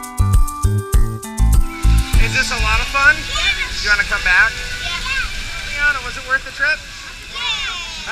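Background music with a steady beat that stops about two seconds in. It gives way to children's voices and squeals over splashing water at a splash pad.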